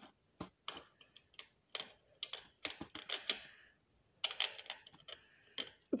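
Plastic Lego bricks clicking and tapping in an irregular run as a hand moves the crossing gate arm of a Lego model.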